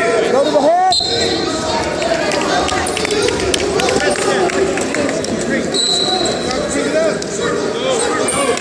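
Spectators at a wrestling match shouting and cheering in an echoing gym, with scattered sharp knocks and slaps. A short, steady, high referee's whistle sounds about a second in and again around six seconds.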